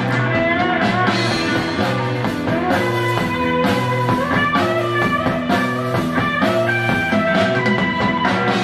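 Live rock band playing the instrumental opening of a song: electric guitar, bass and drum kit at a steady, full level.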